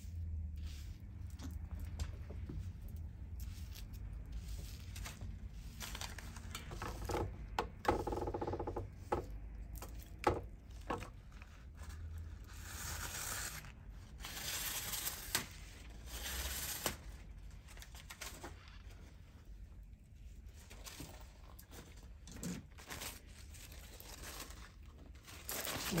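A plastic comb drawn through stiff, mousse-set wig hair while hands smooth it down. The combing strokes are scratchy and loudest a little past the middle, with scattered small clicks over a low steady hum.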